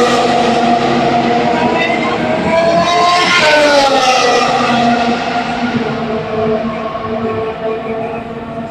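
Formula 1 car engines running at speed on the circuit. Their pitch rises and falls as the cars pass, with a clear rise and fall around the middle.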